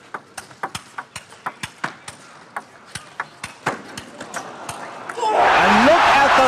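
Table tennis rally: the ball clicks off bats and table in quick, irregular strokes. About five seconds in, a loud crowd cheer with shouting voices breaks out as the point ends.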